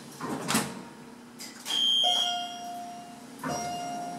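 Elevator signal chime: a bright electronic tone about two seconds in, falling to a lower held tone, then another lower tone near the end, as the elevator's sliding doors begin to close. There is a short knock about half a second in.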